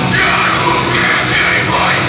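Heavy metal band playing live: distorted electric guitars, bass and drums, loud and continuous.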